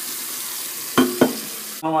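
Kitchen faucet running into a stainless steel sink: a steady hiss of water, with two sharp knocks about a second in, a quarter-second apart. The water sound stops abruptly near the end.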